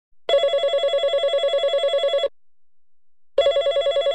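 Telephone ringing with a rapid trill: one ring of about two seconds, a pause of about a second, then a second ring starting near the end.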